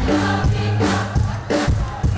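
A youth brass band playing live: sustained brass chords over a steady drumbeat.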